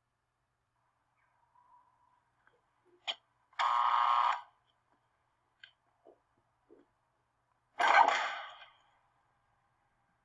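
A bell at a steel prison door rings once for about a second, followed by a few light knocks. Then the hatch behind the door's barred grille opens with a sudden metallic clang that rings and fades over about a second.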